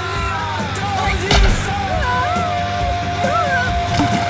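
Trailer music with high-pitched voices over it, a single thump about a second and a half in, and a long held note starting about two seconds in.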